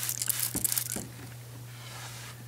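Wet rustling and scrubbing on a ceramic tile floor as water is put down and a cloth is worked over the tiles, busiest in the first second with a couple of small clicks, then fading to a faint hiss.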